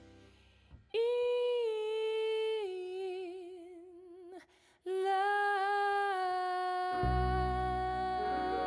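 A woman's voice holding long wordless notes with vibrato: one held note that steps down partway through, a brief break, then another long held note. About seven seconds in, low notes from the piano and upright bass come in under the voice.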